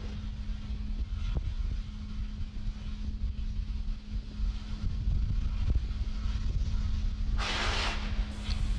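Launch-pad ambience around a fuelled Falcon 9 venting vapour: a steady low rumble with a constant hum. A short burst of hiss comes in near the end.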